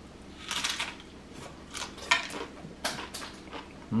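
A crisp corn tostada crunching as it is bitten into and chewed: a cluster of crunches about half a second in, then a string of shorter, separate crunches.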